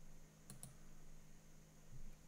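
Near silence: quiet room tone with a faint low hum, broken by two faint clicks close together about half a second in.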